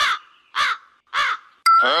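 Crow cawing three times, about half a second apart, as a cartoon sound effect.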